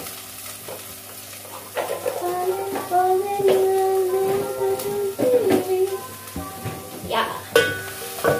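Chopped onions sizzling in hot oil in an aluminium cooking pot, with a few knocks. A tune of long held notes plays over it from about two seconds in.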